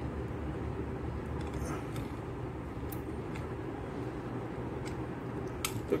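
Steady low background noise, with a few faint clicks in the second half as the luggage scale is handled.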